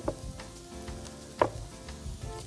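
Bread dough being pressed and kneaded with the knuckles in a glass bowl, with one short knock about one and a half seconds in, over a faint steady sizzle of onions frying in a pan.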